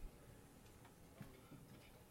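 Near silence with a few faint, scattered clicks from a laptop's keys and trackpad.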